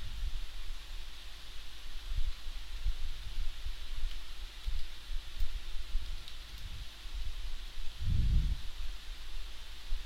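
Steady hiss of a desk microphone's background noise, with irregular low rumbles and a stronger low swell about eight seconds in.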